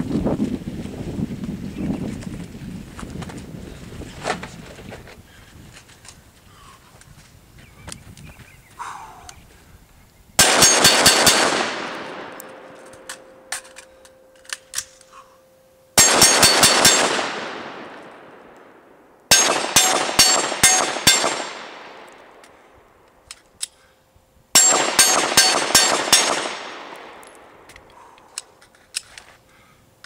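Four strings of about five rapid gunshots each, roughly 10, 16, 19 and 24 seconds in: two magazines of rifle fire with a pause for a reload, then a quick transition to pistol and two more magazines.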